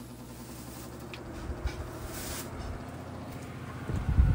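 Electric fan running with a steady low hum, just switched on through a Wi-Fi smart plug, with a few faint clicks or rustles about a second or two in.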